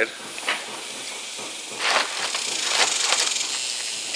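A steel tape measure being handled, with a short scrape about two seconds in and a fine fast rattle about a second later, over a steady hiss.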